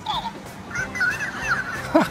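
A voice-mimicking plush pug toy plays back a person's words in a high-pitched, squeaky voice, with most of it coming from just under a second in.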